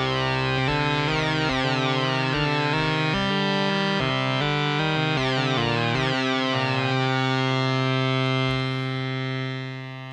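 Moog Muse analog synthesizer playing a melodic run on an oscillator-sync lead patch with detune and unison: the synced second oscillator's pitch is swept by the filter envelope, so many notes start with a bright, falling sync sweep, the classic sync scream. The sound dies away over the last second or so.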